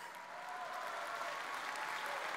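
Audience applause, starting quietly and swelling steadily, with a few faint voices among it.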